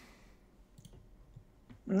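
Near silence in a gap in the talk, with a few faint, scattered clicks.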